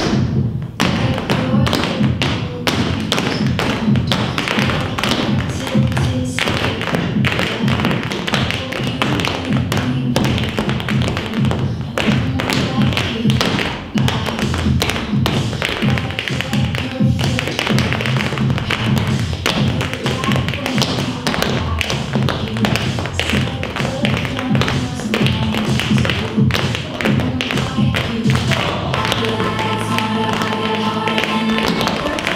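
Tap shoes of several dancers striking a stage floor in quick, rhythmic clicking patterns, over a loud recorded pop song with a heavy bass line.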